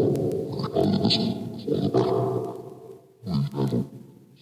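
Hell Box ghost box app sweeping through its sound banks: a rapid stream of chopped, garbled sound fragments, loud at first and fading, with a second short burst near the end.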